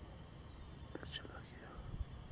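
A brief, faint whisper about a second in, over a low rumble of wind on the microphone.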